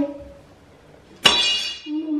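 A single sharp metallic clank about a second in, ringing briefly before it dies away: a metal support bar of a flat-pack bed frame knocked against the frame or the floor.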